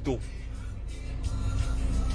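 Low rumble of a vehicle, heard from inside a car, growing louder about a second in, under faint background music.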